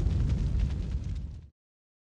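Tail of a cinematic boom sound effect on a logo outro: a deep, low rumble with faint crackle, dying away and cutting to silence about one and a half seconds in.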